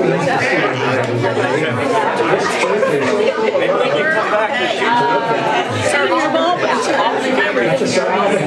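Many people talking at once in a large room: overlapping conversation and chatter among a congregation, no single voice clear.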